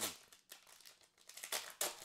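A foil trading-card pack wrapper being torn open by hand: a run of crinkling and tearing crackles, loudest near the end.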